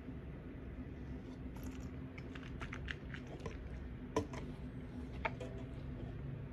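A person sipping a drink from a plastic cup and then tasting it, with a run of soft wet mouth clicks and lip smacks; a sharper click comes a little past four seconds in.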